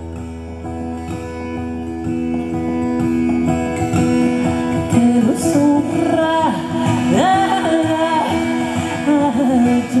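A woman singing live to her own acoustic guitar: the guitar plays alone for the first few seconds, then her voice comes in about four seconds in and carries the melody over it.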